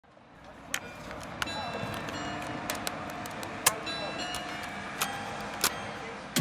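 Outdoor street ambience with traffic fading in, over which come six sharp plastic clicks, spaced about a second apart, from a cassette case and portable cassette player being handled.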